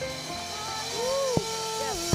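Live worship music: a woman singing into a microphone with the band, a sharp drum hit about a second and a half in, and a cymbal wash swelling near the end.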